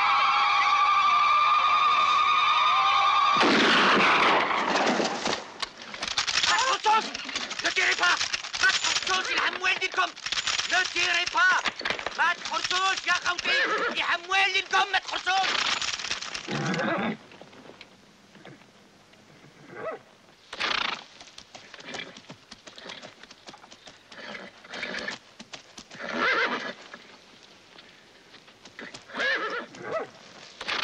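A long wailing note held for about three and a half seconds, then a crowd of mounted men shouting and crying out while horses whinny. After about seventeen seconds it drops to scattered, shorter cries and whinnies.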